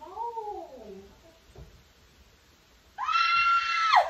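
A person's voice: a drawn-out cry falling in pitch at the start, then about three seconds in a loud, high-pitched shriek held steady for about a second.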